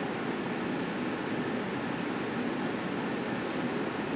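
Steady room noise: an even, fan-like hum and hiss with no change, and a few faint high ticks.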